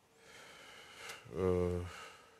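A man's audible intake of breath, then a short, low, hummed hesitation sound (an 'eee') just before he starts to read aloud.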